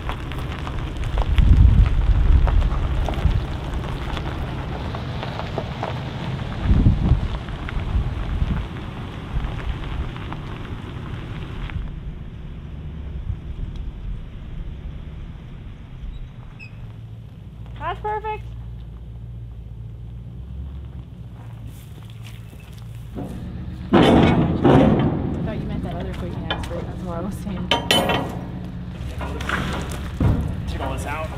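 A Toyota Tundra pickup's engine running at low speed as it tows a loaded trailer over a gravel clearing, with a couple of louder low rumbles in the first few seconds and a steadier low hum in the middle. In the last few seconds, sharp knocks and clatter.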